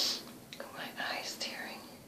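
A woman whispering a few words under her breath, opening with a short, sharp hiss.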